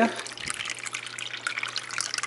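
Water being poured into a plastic sprouting tray: a steady splashing trickle as the seeds are drenched in their twice-daily watering.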